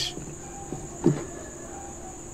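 Quiet recording background with a steady high-pitched whine. About a second in there is a brief vocal sound.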